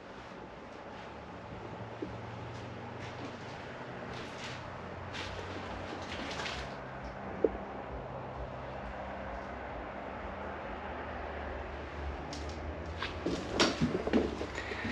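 Steady low rumble of traffic from a busy road, heard from inside the house and swelling a little midway, with a few faint knocks and creaks and a cluster of louder knocks near the end.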